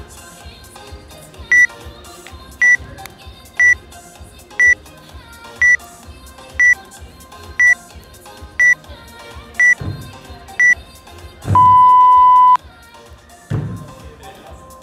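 Gym interval timer counting down to the start of the workout: ten short high beeps about a second apart, then one long, lower beep as the start signal, over background music. A thud follows near the end as the first box jump begins.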